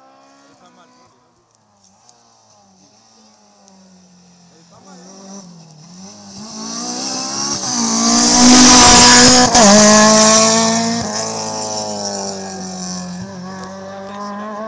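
A rally car's engine at full throttle, growing louder as it approaches and passing close by about eight to ten seconds in. Its pitch drops sharply once as it changes gear, then climbs again as it accelerates away and fades.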